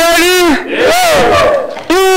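A man's voice amplified through a handheld microphone, shouting a few drawn-out, pitched calls with short breaks between them.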